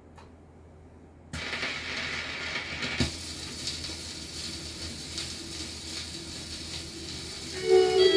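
Automatic record changer setting its tonearm down on a shellac 78 rpm record: a sudden rise in mechanical noise about a second in, a thump as the stylus lands about three seconds in, then steady surface hiss and crackle from the lead-in groove. The band's music starts just before the end.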